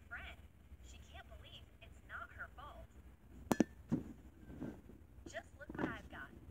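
Faint speech throughout. About three and a half seconds in comes a single short, sharp click carrying a brief tone, louder than the voices.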